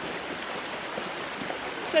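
Floodwater rushing across a track, a steady rushing noise.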